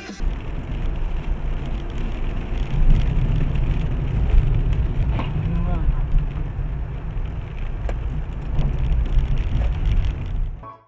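Dashcam audio from inside a moving car: a steady low rumble of engine and road noise, with a few faint knocks.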